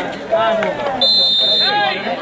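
Referee's whistle blown once, a single steady high blast of under a second about halfway through, signalling play to restart, with men's voices shouting before and after it.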